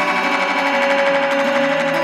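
Electronic dance music from a DJ set playing loud over a club sound system: a held synthesizer chord with a fast stuttering pulse running through it.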